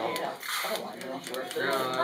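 Indistinct voices talking, with light clicks of small wooden blocks being set onto a stack.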